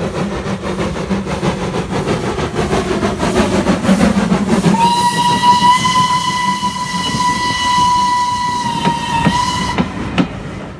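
Steam locomotive working past with its train, then, about halfway through, its steam whistle blown in one long steady blast of about five seconds that cuts off just before the end.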